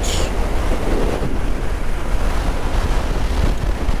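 Steady wind noise buffeting the microphone of a motorcycle riding at road speed, with a low rumble from the bike and road underneath.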